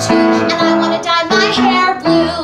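A young woman singing a musical-theatre song into a microphone over instrumental accompaniment, holding long notes with a wavering vibrato.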